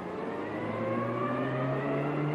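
Car engine accelerating as the car pulls away, its pitch rising slowly and steadily.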